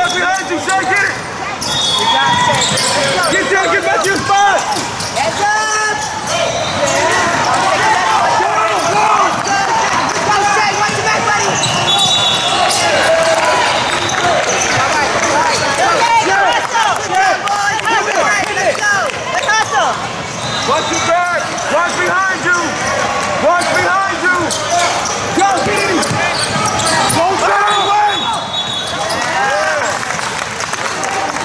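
Youth basketball game sounds in a large gym: a basketball bouncing on the hardwood court amid continual overlapping shouting from players and spectators, with a few brief high-pitched squeaks or calls cutting through.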